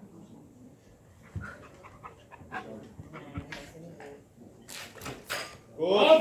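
Weightlifter's short, hissing breaths while setting up and pulling a barbell into a squat clean, over faint background talk. Loud shouting voices break in just at the end as the bar is caught.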